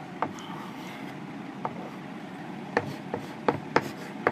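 Chalk tapping and scratching on a chalkboard as numerals and dots are written: a handful of sharp taps, most of them in the last second and a half.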